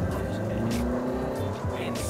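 Peugeot 308's 1.6-litre diesel engine heard from inside the cabin, pulling through first gear as the MCP automated manual gearbox changes up to second. The shift is the jerky one typical of this manual-based automatic gearbox.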